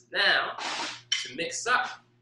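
A man's voice in short bursts, with a breathy hiss in the middle.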